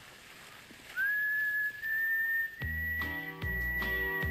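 A long whistled note that slides up at the start and then holds steady. About two and a half seconds in, advert music with bass and guitar comes in under it.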